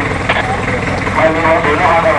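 Indistinct voices talking, in bursts, over a steady background noise.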